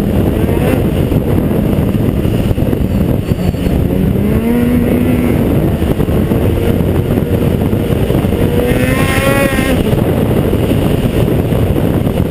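Ski-Doo XP snowmobile's 600 SDI two-stroke twin running hard along a trail, fitted with an aftermarket Dynoport pipe and Big Core Barker silencer. The engine note climbs about four seconds in and again near nine seconds as the throttle is opened.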